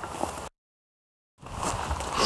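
Faint outdoor background noise broken by a dead-silent gap of nearly a second, about half a second in, where the sound track is cut; the faint background then returns.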